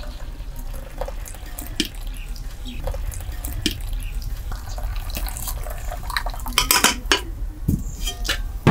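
Hot milk tea (chai) poured in a stream from a metal pot through a steel strainer into cups, the liquid trickling and splashing steadily. A few metal clinks near the end.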